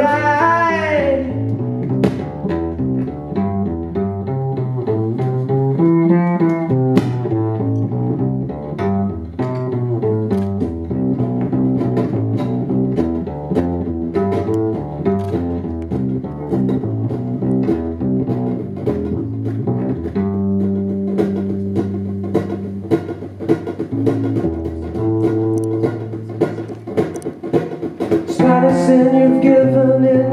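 Instrumental passage: a steel-string acoustic guitar picked and strummed over a double bass line, the bass holding longer notes about two thirds of the way through. Singing comes back in near the end.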